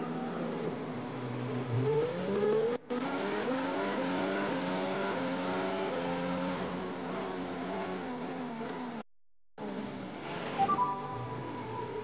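Onboard sound of a Formula 1 car's V6 turbo-hybrid engine accelerating hard away from the race start, its pitch climbing gear after gear. The sound cuts out briefly about three seconds in and again for about half a second around nine seconds in.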